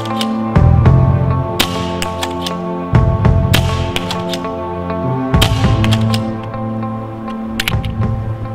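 Background music with a steady beat, over which a pump-action paintball marker fires, with sharp cracks about every two seconds and smaller clicks between them as the paintballs are shot at a target.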